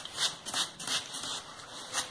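Plastic trigger spray bottle misting anthurium leaves: several short hissing sprays, one every half second or so.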